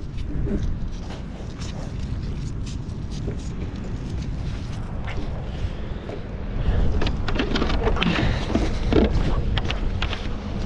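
Wind rumbling on a body-mounted action-camera microphone, with small handling rustles; from about two-thirds in, louder rustling and footsteps through low scrub and brush.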